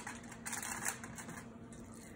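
Hands patting and pressing raw ground beef and pork into a loaf on a foil-lined sheet pan: soft, irregular pats and squishes over a faint steady hum.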